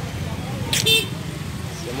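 Steady low rumble of street traffic, with one short vehicle horn toot just under a second in.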